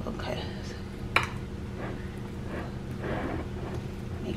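Marshmallow-coated rice cereal being pressed and spread in a baking dish with a spoon: soft crackling scrapes, with one sharp click about a second in. A steady low hum runs underneath.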